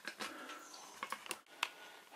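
Faint, scattered clicks and taps of small wet dogs' claws on the bottom and rim of an empty bathtub.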